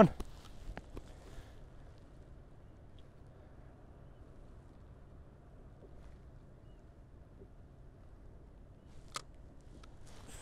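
Near-quiet, faint low background noise with a few small clicks, the sharpest one about nine seconds in.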